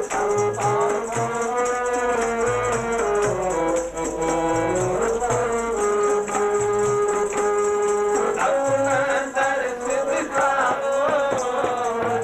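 Devotional ensemble music: a harmonium playing a sustained, shifting melody over regular tabla strokes, with jingling hand percussion throughout.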